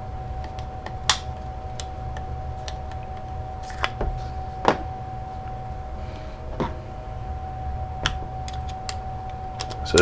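Scattered light clicks and knocks as an AR-15 rifle and small tools are handled on a workbench, the sharpest about a second in and near the middle, over a steady low hum.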